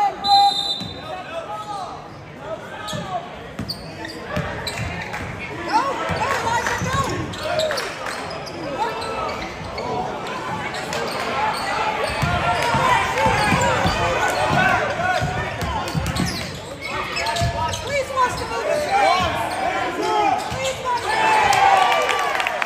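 Basketball game in a gym: a ball dribbled on the hardwood court amid shouting and chatter from players and spectators, echoing in the hall. The voices grow louder near the end.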